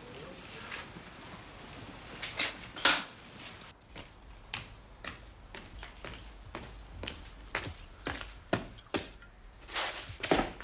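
Boots stepping on a hard floor at a steady walking pace, about two steps a second, beginning about four seconds in, with crickets chirping steadily behind them.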